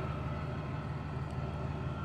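Small engine running steadily in the background, an even low hum with a faint thin whine above it, most likely the portable generator powering the sump pump.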